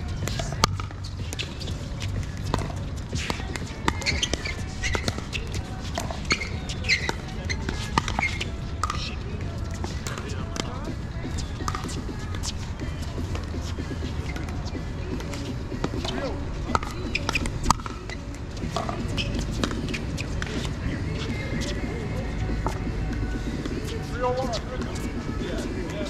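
Pickleball paddles hitting a plastic ball in a rally: sharp, irregular pops, thickest in the first ten seconds, over a steady low rumble.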